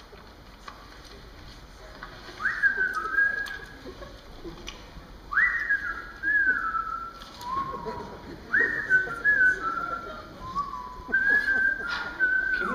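A whistled, bird-like call repeated four times, about three seconds apart. Each phrase leaps quickly up to a high note, then falls in short held steps.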